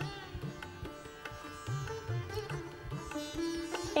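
Soft background music: a plucked string melody over a steady drone, with a slow pulsing low line.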